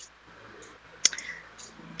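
A pause in a video-call conversation with faint room noise and a single sharp click about a second in.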